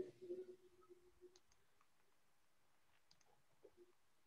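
Near silence with a short faint hum in the first second, then a few faint, scattered clicks of a computer mouse.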